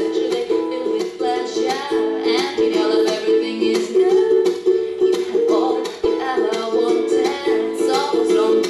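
Ukulele strummed in a steady, even rhythm of chords, played live and close to the microphone in a small room.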